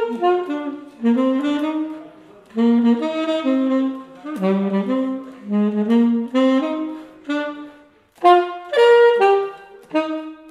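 Weltklang alto saxophone played solo: a flowing melodic line of many short notes, broken by two brief pauses between phrases, about two seconds in and about eight seconds in.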